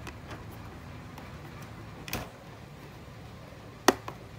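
Small plastic clicks and handling ticks as a green multi-pin terminal-block connector is pushed into the socket of an AmHydro IntelliDose controller. One sharp click near the end is the loudest sound, as the plug seats and the unit powers up.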